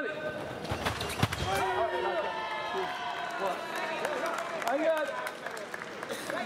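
Sabre fencing exchange: a quick run of sharp stamps and blade hits about a second in, followed by loud shouting as the touch lands.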